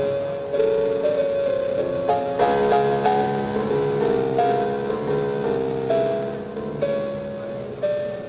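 Solo piano played on a 1915 Steinway & Sons Model D concert grand: a slow melody of held notes over a soft accompaniment, growing quieter near the end.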